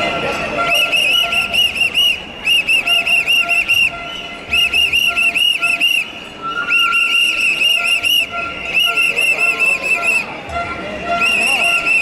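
Protest whistles blown in rapid rhythmic runs, about five shrill blasts a second, each run lasting a second or so and repeating after short pauses.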